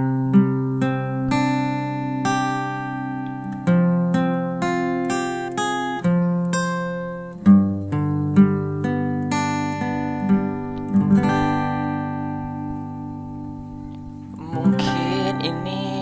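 Acoustic guitar playing a picked intro, single notes ringing over held bass notes. A man's singing voice comes in near the end.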